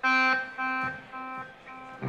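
One amplified instrument note, rich in overtones, sounds four times about half a second apart. Each repeat is quieter than the last, like the repeats of an echo delay.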